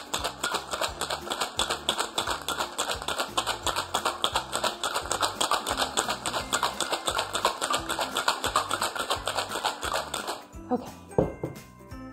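Ice rattling in a metal cocktail shaker shaken hard, about five strokes a second, stopping shortly before the end, followed by a knock as the shaker is set down on the counter. Background music plays underneath.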